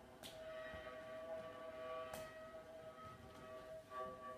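Viola bowed softly, holding one long steady note, with a second lower note coming and going beneath it. Two short sharp clicks, about a quarter second in and again about two seconds in.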